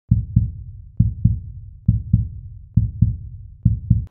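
Heartbeat sound effect: five deep double thumps, lub-dub, repeating a little under once a second.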